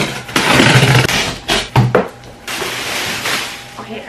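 Box cutter slicing the packing tape along a large cardboard box, a loud tearing hiss for about the first second, then a couple of knocks and the rustle of cardboard flaps and plastic wrap as the box is opened.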